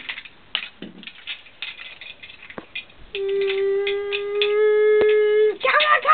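A few light scattered clicks and knocks, then one loud steady held note lasting about two and a half seconds, with a single sharp click partway through it.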